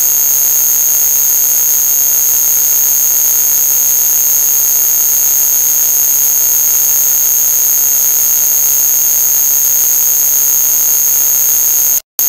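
A loud, unchanging electronic noise: a hiss spread across all pitches with two piercing high steady tones on top, like a synthetic alarm or drone.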